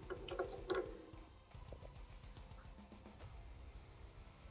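Soft handling clicks and rustles from gloved hands moving a plastic miniature, a few in the first second, then quiet room tone.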